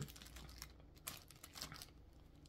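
Faint crinkling of a clear plastic packaging bag being handled, a few small scattered rustles and clicks.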